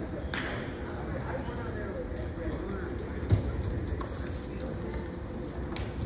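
Wrestling shoes scuffing and squeaking on the mat as two wrestlers hand-fight on their feet, with a few short high squeaks and a sharp thump about three seconds in and another about four seconds in.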